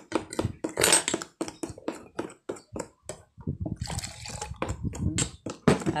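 A metal utensil stirring a wet batter in a stainless steel mixing bowl: quick, wet, sloshing strokes, several a second, with a brief pause about halfway, then softer strokes.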